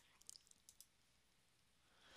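Near silence: room tone with a few faint, short clicks in the first second.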